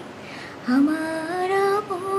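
A woman singing a Bengali song solo. A little over half a second in, her voice slides up into one note and holds it for about a second.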